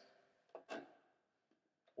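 Near silence with a few faint metallic clicks, two close together about half a second in and one near the end: a 7/16 wrench on the stern-side bolt of a racing shell's rigger rail as the bolt is tightened.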